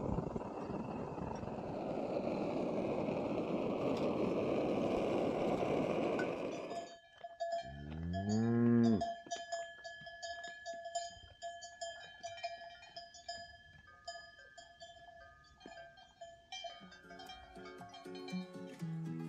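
A steady rushing noise that cuts off abruptly about seven seconds in, then a cow lows once, a call of about a second and a half. Cowbells on the grazing cattle ring and clink through the rest.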